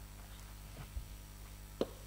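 Faint steady electrical hum, with a dull thump about halfway through and a sharper knock near the end as a woven offering basket is set down on the floor.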